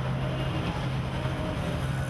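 Steady low mechanical hum with a faint held low tone.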